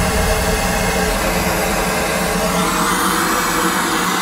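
Gas blowtorch burning with a steady hiss as its flame heats a copper pipe joint for soldering.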